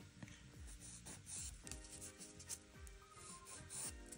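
A nail file stroking across the tip of a gel-coated fingernail in a few short scraping passes, filing the edge smooth, over soft background music.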